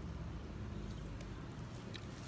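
Quiet outdoor background: a low, steady rumble with a faint haze over it, and a single faint click near the end.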